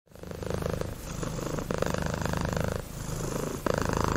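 A domestic cat purring, a fast steady rumble that swells and eases every second or so as it breathes in and out.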